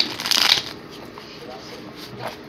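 Tarot cards being shuffled by hand: a short papery rustling burst about half a second long at the start, then quieter handling of the cards with a few small ticks.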